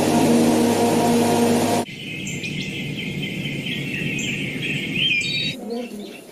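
Film soundtrack: sustained music over a steady rushing hiss, cut off abruptly about two seconds in by a chorus of bird calls and chirps. The chirping stops suddenly about half a second before the end.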